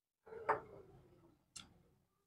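Small screwdriver clicking against the wire terminal on a Bajaj ceiling fan's motor housing: two clicks about a second apart, the first with a short ring.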